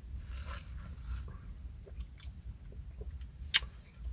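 Sipping a drink through a wide straw, then chewing strawberry popping boba with small wet clicks as the pearls burst, and one sharp mouth click near the end.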